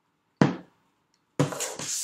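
Tarot cards cut and set down on a tabletop. A sharp slap of a stack hitting the table comes about half a second in, then a longer scraping of cards sliding and being placed near the end.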